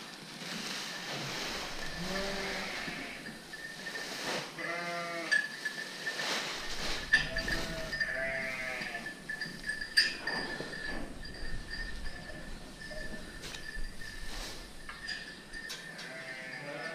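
Merino sheep and lambs bleating several times, a few short calls in the first half, with a few sharp knocks later on.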